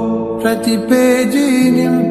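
Slowed and reverbed Telugu film song: a voice sings a wavering, ornamented melody over sustained accompaniment, with a new phrase beginning about half a second in.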